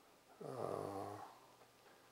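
A man's short low hesitation hum with the mouth nearly closed, under a second long and falling slightly in pitch, about half a second in.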